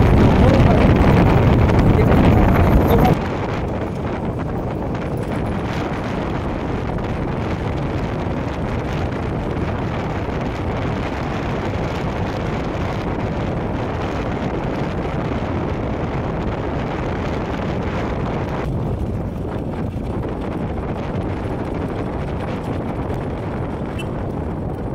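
Loud wind buffeting the microphone of a moving motorcycle, which cuts off abruptly about three seconds in. A steadier, quieter motorcycle ride follows: the engine running with wind rushing past.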